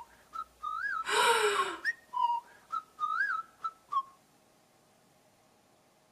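A whistled tune of short notes that rise and fall, with a breathy whoosh about a second in. It stops about four seconds in.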